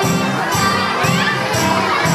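Music with a steady beat, with children's shouting voices and crowd noise over it.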